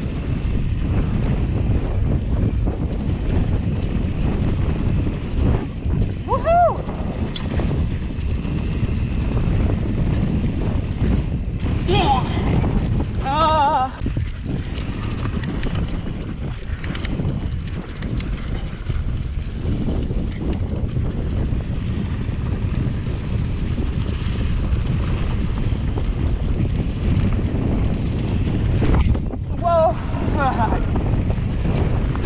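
Wind buffeting the camera microphone and mountain-bike tyres rolling over a dirt singletrack, a steady rumbling noise. Short shouts or whoops cut through about six seconds in, twice around twelve to fourteen seconds in, and again near the end.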